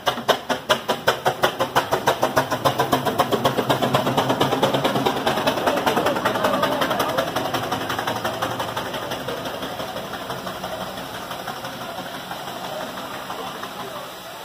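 Steam traction engine pulling away, its exhaust chuffing in a steady rhythm of about four beats a second. The beats blur and fade over the second half as it moves off.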